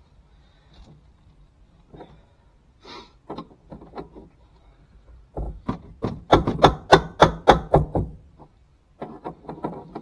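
A run of sharp knocks and thumps, about four a second for nearly three seconds in the middle, with scattered single knocks before and a short cluster near the end.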